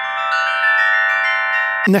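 Metal bell plates ringing, several pitches sounding together with a long bell-like sustain, and more plates struck about half a second in.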